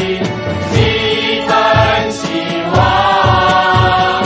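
A song: voices hold long sung notes over a steady low beat.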